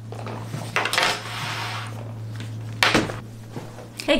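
Handling and movement noise from a person settling in close to the microphone: rustling about a second in and a single sharp tap near three seconds in, over a steady low hum.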